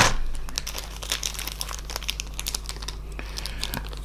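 Packaging crinkling and rustling in the hands as the accessory parts of a model-train set are taken out of their box: loudest in the first moment, then a steady run of light crackles.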